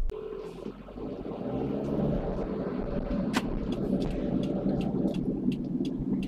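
Car driving noise picked up inside the cabin by a USB webcam's built-in microphone: a steady low engine and road rumble that grows louder over the first couple of seconds as the car gets moving, with a few sharp ticks, the loudest about three and a half seconds in.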